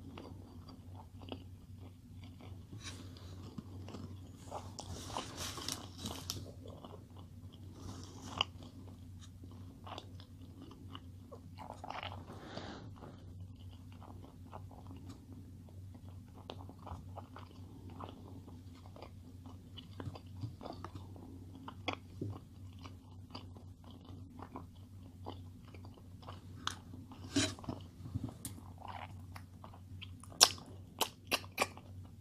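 A person chewing a mouthful of burger close to the microphone: faint mouth clicks and chewing noises, a few louder ones near the end, over a steady low hum.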